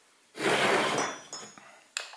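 A 2x4 with a plastic pocket-hole jig on it slid across a plywood workbench: a scraping rush of about a second that fades, with faint metallic clinks in the middle and a sharp click near the end.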